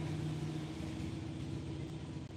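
Steady low mechanical hum with a constant drone.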